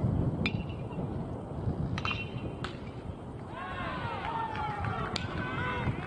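A pitched baseball meeting the plate with a sharp, ringing crack about half a second in, then a few more sharp cracks around two seconds in, followed by a run of high, quickly rising and falling calls.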